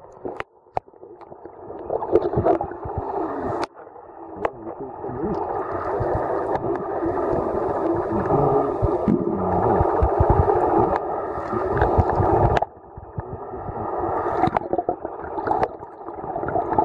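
Muffled underwater noise picked up by a submerged camera: a dense churning wash of moving water and bubbles with nothing high in it, broken by a few sharp knocks early on and sudden brief drops about four and thirteen seconds in.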